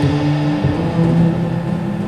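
Upright double bass played pizzicato: a line of low plucked notes, one after another, with no cymbals behind it.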